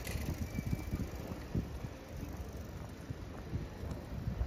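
Outdoor street ambience with an uneven low rumble and no clear single event.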